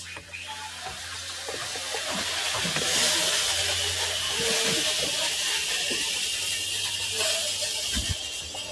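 A steady, loud hiss that builds over the first few seconds and holds through the middle, with a low hum underneath.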